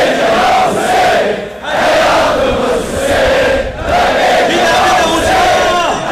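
A large crowd of Shia mourners chanting an Ashura mourning chant in unison, loud and rhythmic, in phrases with short breaks about every two seconds.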